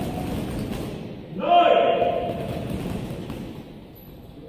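A loud call in a person's voice about one and a half seconds in, fading over about a second, over thuds of boxing gloves hitting heavy punching bags in an echoing hall.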